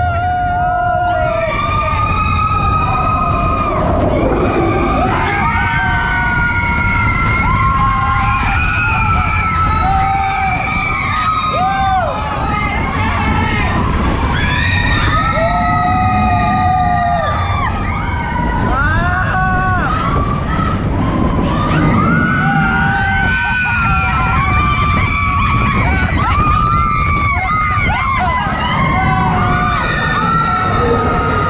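Roller coaster riders screaming in long, held, rising and falling cries, over the steady low rumble of the moving coaster train.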